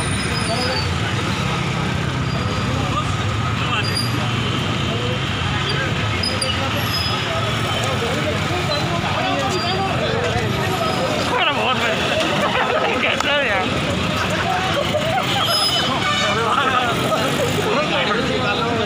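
Street traffic with a vehicle engine running steadily, under several people talking and calling out at once; the voices grow busier in the second half.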